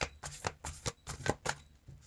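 Tarot cards being shuffled by hand: a run of short, uneven card slaps and snaps, about three or four a second.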